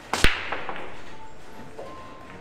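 Break shot in 10-ball pool: a light click of the cue tip on the cue ball, then a split second later a loud crack as the cue ball smashes into the racked balls. A fading clatter of balls knocking against each other and the cushions follows.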